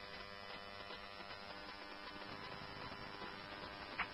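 Faint steady hum and hiss of a radio scanner feed with no transmission on the channel.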